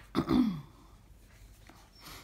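A woman clears her throat once at the very start, a short sound falling in pitch, followed by faint room noise.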